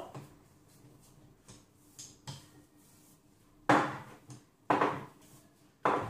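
Wooden rolling pin working dough on a wooden pastry board: a few faint taps, then three loud knocks about a second apart, each trailing off as the pin rolls.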